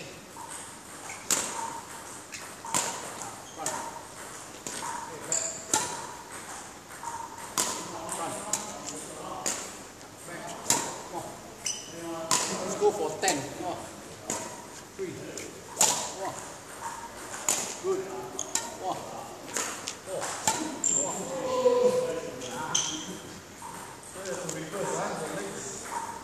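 A badminton footwork drill on a tiled court: sharp clicks and smacks from the player's feet and swings, coming every second or so, with indistinct voices in the background.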